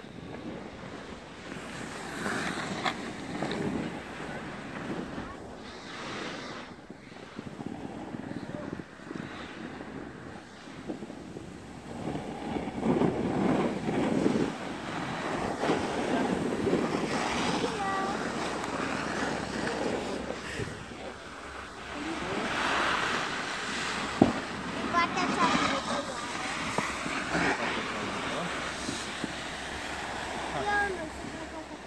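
Hiss and scrape of sliding over packed snow on a groomed slope, swelling and easing with the turns, with wind buffeting the microphone.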